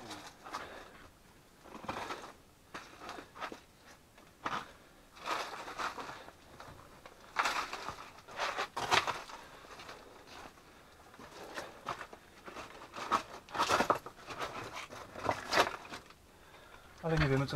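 Footsteps crunching over loose rock rubble in a narrow mine tunnel, stones shifting and clattering underfoot in irregular bursts, busiest around the middle and again near the end.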